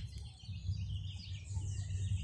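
Birds chirping faintly in the background over a low, steady rumble.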